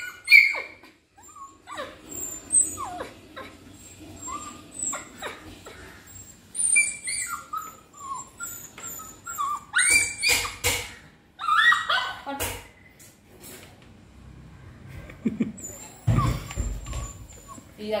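A puppy whining and whimpering in many short, high-pitched cries while begging for a treat, with a few sharp knocks and a low thump about two-thirds of the way through.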